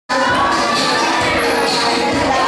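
A crowd of children shouting and cheering together, loud and unbroken.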